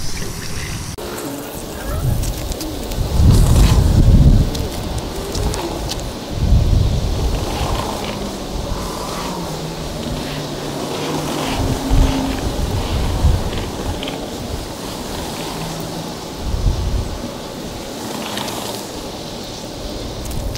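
Water from a garden hose running through a quick-fill water balloon bunch, a steady hiss and spatter as the balloons fill, broken several times by low rumbles.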